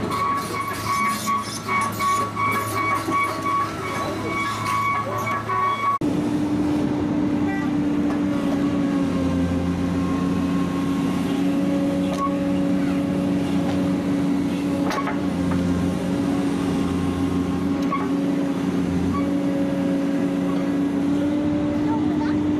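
Heavy diesel machinery running: the engines of an excavator and a lowboy truck, with clicking and rattling in the first few seconds. After that the excavator's engine runs at steady revs under load as its arm sets a concrete barrier block in place, with a couple of sharp metallic knocks.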